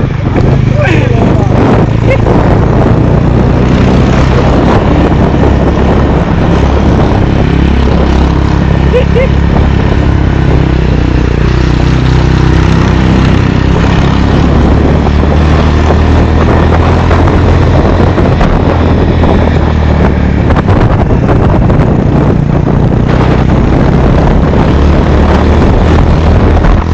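Motorcycle engine running steadily on the move, under loud wind buffeting on the microphone.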